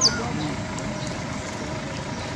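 A brief high squeak, falling in pitch, right at the start from a young long-tailed macaque in the troop. Under it runs a steady outdoor rumble like distant traffic, with faint far-off voices.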